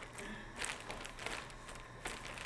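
Plastic bag of green coffee beans being handled and opened, faint crinkling and rustling in several short bursts.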